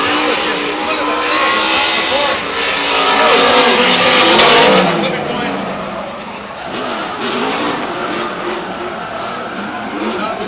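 Two drift cars sliding in tandem, their engines revving hard with tyre squeal. The sound is loudest from about three to five seconds in, then drops away as the cars move off.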